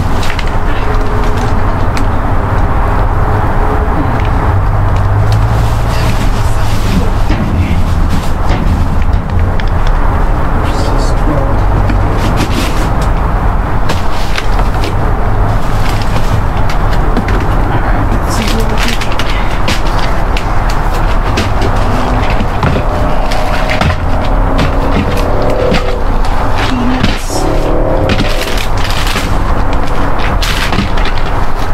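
Plastic bags and cardboard rustling, with items knocking, as a dumpster's contents are sorted by hand. All of it sits over a loud, steady low rumble.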